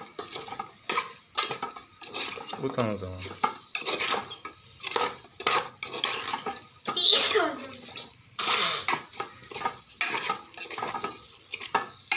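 Metal spoon scraping and clinking irregularly against an aluminium rice-cooker pot while small fish are stirred in a thick masala.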